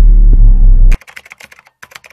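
Loud, deep intro music sting that cuts off suddenly about a second in, followed by a fast run of keyboard typing clicks used as a sound effect for text appearing.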